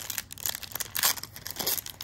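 Foil wrapper of a Magic: The Gathering collector booster pack being torn open and crinkled by hand: a run of irregular crackles and rips, loudest about a second in.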